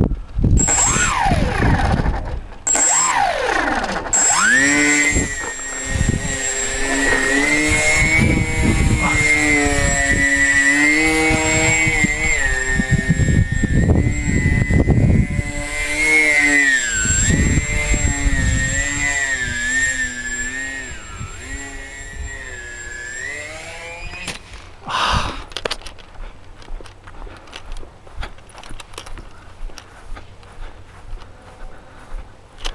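Twin puller propellers and motors of a radio-controlled A380 model airliner whining in flight, the pitch sweeping down early on, then holding high and dipping as the throttle and distance change. About 25 s in the whine gives way to a short loud noise as the model goes down, followed by quieter scattered sounds.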